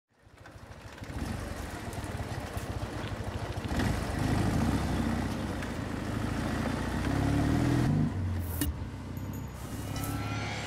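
Motorcycle engine running with a low pulsing beat, fading in over the first second. It is revved about seven seconds in, the pitch climbing in steps, and drops back just after.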